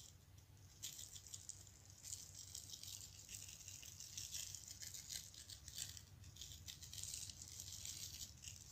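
Iron filings shaken from a small plastic container, a faint rapid rattling and pattering of grains falling onto a paper-covered board. It gets denser about a second in.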